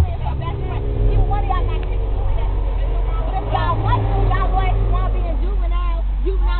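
School bus engine running under way with a steady low rumble, and passengers chattering over it.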